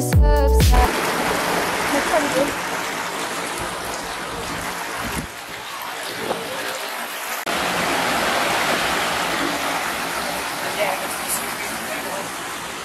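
Music ends about a second in, giving way to a shallow stream rushing over rocks in a steady wash of running water that steps louder about seven seconds in.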